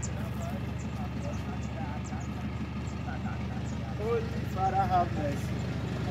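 An engine running steadily at idle, a low even rumble, with people talking over it from about four seconds in.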